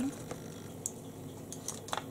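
A few light clicks and taps of makeup tools being handled, as a brush is set down and the next one picked up, over quiet room tone; the clicks come in the second half, the sharpest just before the end.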